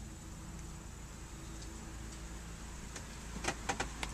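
Faint steady low hum inside a car cabin, with a few light clicks near the end.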